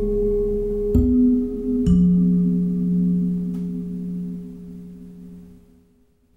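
Slow ambient music played back through Cerwin Vega XLS-15 floor speakers and a subwoofer. A few struck, bell-like notes ring on and die away, with a strong deep note about two seconds in, and the sound fades almost to silence by the end.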